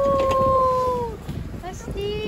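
A high human voice giving one long drawn-out call that rises, holds steady and then trails off after about a second, over the low rumble of the boat at sea.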